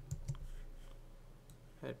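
A few soft clicks at a computer, from the mouse and keys used to select and paste code text, bunched in the first half second with a few fainter ones after.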